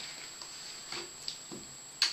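Loose soil crumbling and pattering off a yacon root ball as it is lifted out of a plastic pot and shaken, a few soft irregular patters and rustles.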